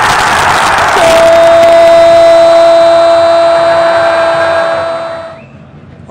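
Stadium crowd roaring as a penalty goes in, then a drawn-out, steadily held goal cry from the TV commentator for about four seconds over the crowd, fading out near the end.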